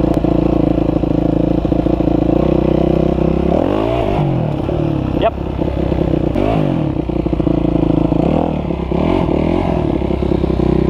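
Dirt bike engine running at a steady pitch, then revved up and back down three times from about a third of the way in.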